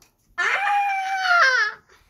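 A single high-pitched vocal squeal lasting about a second and a half, rising at the start, held steady, then falling away at the end.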